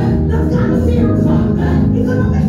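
Gospel worship music: a choir singing together, loud and without a break.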